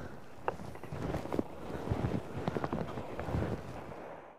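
Wind buffeting an outdoor microphone, with a few faint clicks and rustles.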